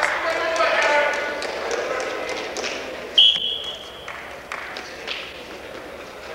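Referee's whistle, one short shrill blast about three seconds in, signalling the start of the wrestling bout. Crowd chatter in the gym before it.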